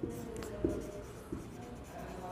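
Marker pen writing on a whiteboard: a few short, quiet strokes of the tip across the board.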